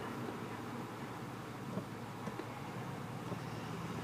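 2005 Dodge Magnum R/T's 5.7-litre Hemi V8 idling steadily through a Flowmaster American Thunder exhaust, a low even sound heard from inside the cabin with the windows down.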